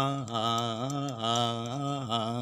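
A man singing, drawing out long held vowel notes that waver up and down in pitch, with no clear words.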